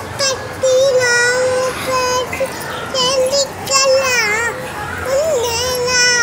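A little girl singing a Tamil song without accompaniment, in long held notes that slide up and down in pitch.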